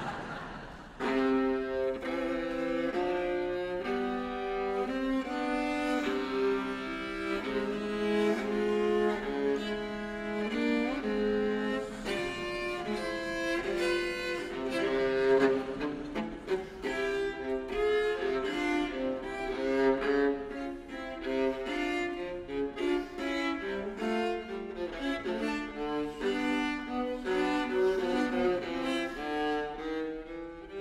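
Solo viola played with the bow, coming in about a second in with a quick run of short notes: the opening of a medley of European Union national anthems.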